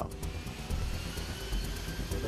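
Turbofan whine of an A-10 Thunderbolt II jet, faint and slowly rising in pitch, under background music.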